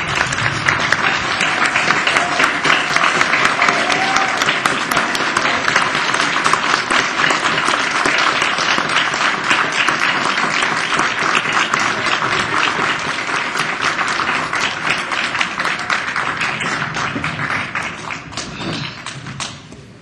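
Audience applauding: a long, dense round of many people clapping that thins out and fades over the last few seconds.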